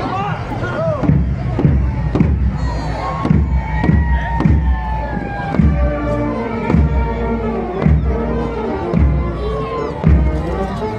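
Brass band playing a march with a steady bass-drum beat that starts about a second in, over crowd chatter.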